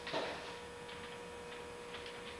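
A drawing stick scratching and tapping on a paper pad on an easel, making a few faint, irregular ticks, over a steady hum.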